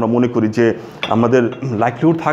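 A ceramic mug set down on a saucer with a clink, alongside a man's voice.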